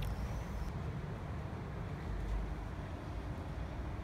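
Distant city traffic heard as a steady low rumble.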